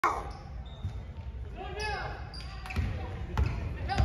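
Basketball bouncing on a hardwood court, with low thuds that come thicker in the second half, under the voices of players and spectators.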